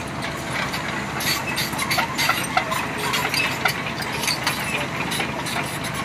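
Small crawler excavator's diesel engine running as the machine travels on its tracks, with irregular clanks and clicks from the undercarriage over the steady engine noise.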